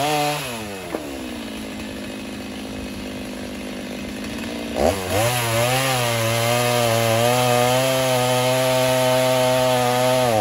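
Gas chainsaw cutting sawmill slabs into firewood. It drops from full revs to a steady idle just after the start, then revs back up about five seconds in and runs under load through the wood, its pitch wavering slightly.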